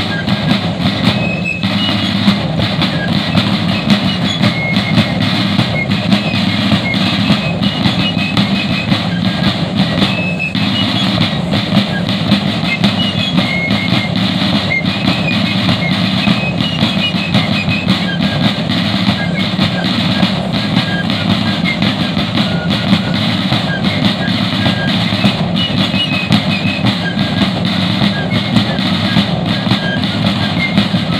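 Civil War–style fife and drum corps playing a field-music tune: shrill fifes carry the melody over continuous rapid beating on field drums.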